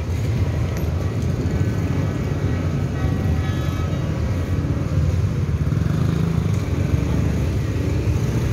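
Street traffic of motor scooters and cars passing, a steady low engine rumble with no breaks.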